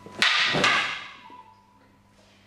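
Two sharp clacks of wooden bokken swords striking each other, about half a second apart, with a short rushing swish of the blades moving between and after them: one sword knocking the other's blade aside.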